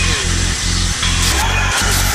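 Heavy metal music: a heavily distorted electric guitar riff on low chords, broken by short regular gaps.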